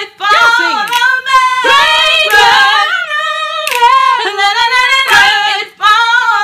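A high voice singing a cappella, drawing out long notes with a wavering pitch, with short breaks for breath just after the start and near the end.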